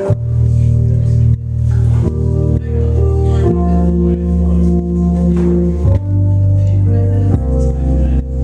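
Live band playing a slow song: sustained keyboard chords over a low bass line, the chords changing every second or two.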